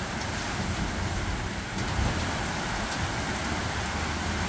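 Heavy rain pouring steadily onto a wet tiled patio and lawn, an even, unbroken hiss of downpour.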